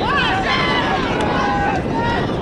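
Several voices shouting and calling out at an outdoor football match, with a sharp rising shout at the start, over a steady low rumble of wind on the microphone.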